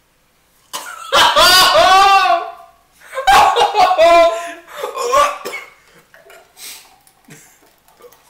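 Young men laughing hard in two loud fits, with coughing, after smelling a disgusting blended smoothie; quieter laughter follows.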